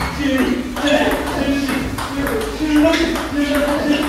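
Table tennis rally: the plastic ball is hit back and forth off rubber-faced paddles and bounces on the table, about six shots in four seconds, with players' voices over it.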